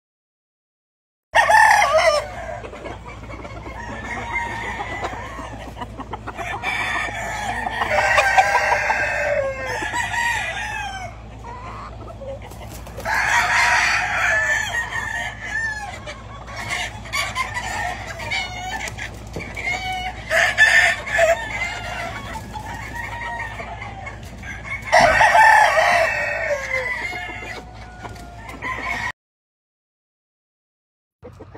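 Gamefowl roosters crowing again and again, several long, loud crows with clucking between them.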